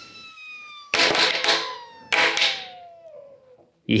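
Compressed air from a Bontrager TLR Flash Charger pump rushing through the open valve stem into a dry-mounted Panaracer GravelKing X1 700c x 40 tubeless tyre, a whistling hiss that falls steadily in pitch as the pressure evens out. Two loud popping sounds, about one and two seconds in, are the tyre beads snapping onto the hooked carbon rim: the tyre has seated.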